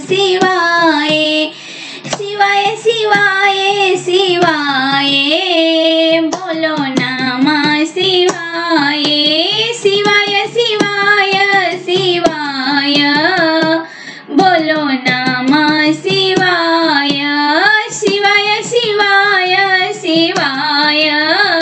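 A high voice singing a Bhojpuri devotional folk song to Shiva (a Shiv vivah geet), in long, ornamented, gliding phrases with short breaks between lines. Light percussive taps run through it.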